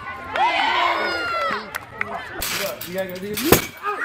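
A person's loud, high-pitched drawn-out yell lasting about a second, followed by voices and a single sharp knock shortly before the end.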